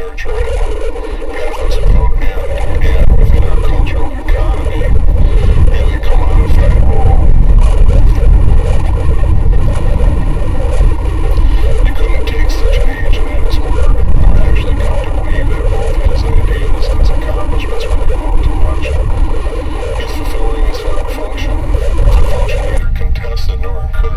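Dense experimental noise built from layered, degraded recordings: a heavy low rumble under a steady mid-range drone, swelling in over the first few seconds, with an unintelligible voice buried in the mix.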